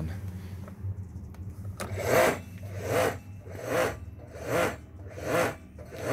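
Kärcher K3.96M electric pressure washer running and surging: a steady hum with a swelling, rhythmic pulse about every 0.8 seconds, setting in about two seconds in. The surging is the sign of a fault that leaves the washer giving only moderate pressure at the wand.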